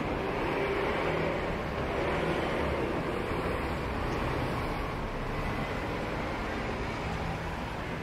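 City street traffic: a steady wash of car engine and tyre noise from passing vehicles, a little louder for a couple of seconds about a second in, then easing.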